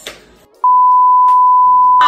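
A loud, steady censor bleep: a single pure beep tone that starts about half a second in and holds level for about a second and a half before cutting off, laid over faint background music.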